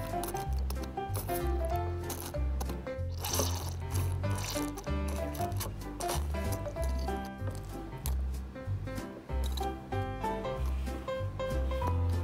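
Background music with a steady bass beat under a simple repeating melody.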